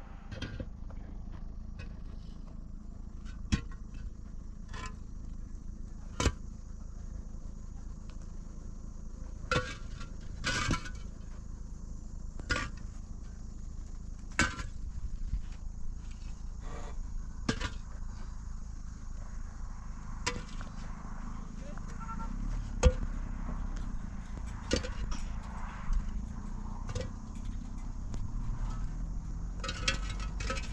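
Hollow concrete blocks and stones being handled and set in place: single sharp knocks and clinks every second or two, over a low steady background noise that grows louder about two-thirds of the way through.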